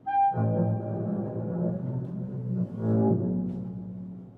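Bowed double bass and B-flat clarinet playing together in a contemporary classical duet. The instruments enter suddenly and loudly in a low register, swell again about three seconds in, and fade near the end.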